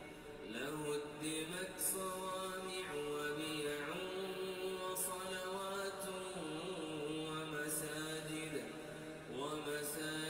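A man's voice reciting the Qur'an in Arabic in a chanted, melodic style, holding long notes and sliding between pitches with ornamented turns.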